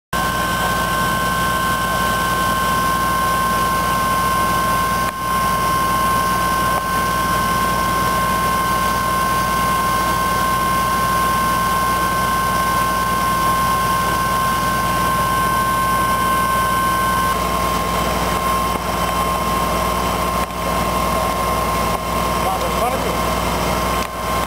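Fire engine's engine running steadily: a constant low hum with a steady high whine over it, and a second, higher whine that cuts off about two-thirds of the way through.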